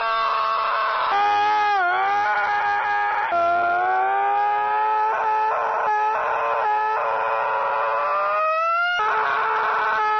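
A person screaming in long, drawn-out cries, the pitch dipping about two seconds in, then one long cry slowly rising for about five seconds.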